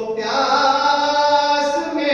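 A man's voice chanting a manqabat, an Urdu devotional poem in praise, unaccompanied, holding one long drawn-out note that shifts up slightly near the end.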